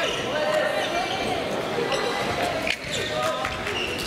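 Badminton play in a gymnasium: racket strikes on the shuttlecock and footfalls on the court floor, a few sharp clicks, over the echoing chatter of many voices in the hall.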